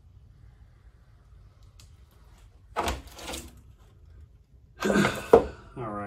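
A wide wooden scraper dragged across thick wet acrylic paint on a canvas in a hard scraping pass. A loud scrape comes about three seconds in, and a second, louder burst of noise follows near the end.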